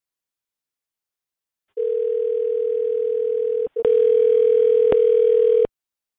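A steady telephone tone heard over the phone line, starting about two seconds in. It breaks off briefly with a click just before the four-second mark, then carries on for about two more seconds before stopping shortly before the end; it is the line's tone while the call waits to be put through to an officer.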